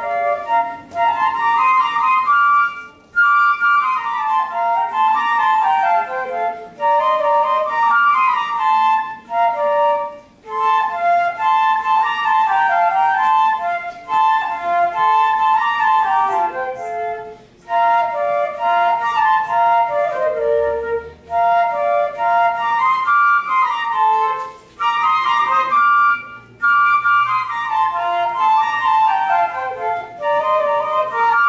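Two concert flutes playing a march as a duet, with quick moving melodic lines in two parts. The playing breaks off briefly for breaths a few times.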